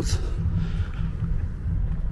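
Wind rumbling on the microphone: a steady low buffeting with faint hiss above it.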